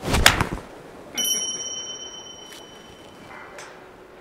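Golf iron swung through and striking a ball off a driving-range mat: a short swish and a sharp crack, cleanly struck. About a second later a high bell-like ding rings and fades over about two and a half seconds.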